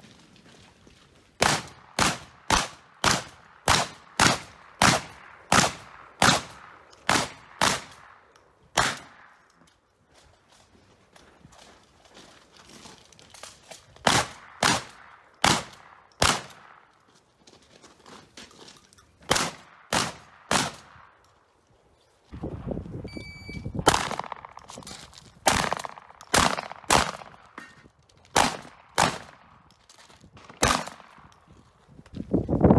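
Shotgun fired in quick strings, about two shots a second, with pauses between strings. A burst of rumbling noise and a short high beep come about two-thirds of the way in, followed by another string of shots.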